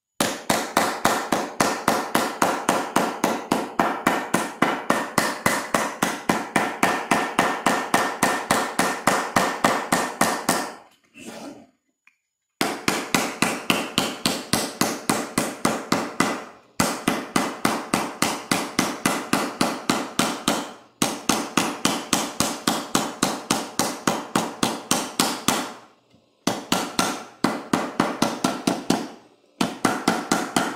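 A hammer sinking a tinplate fruit cutout into a hollow carved in a beech block: rapid, steady blows, about five a second, each with a metallic ring. The blows come in runs of several seconds broken by a few short pauses, the longest about eleven seconds in.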